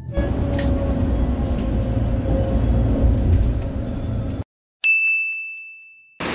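A low, steady rumble that cuts off suddenly, then, after a brief silence, a single high ding that rings on and fades away.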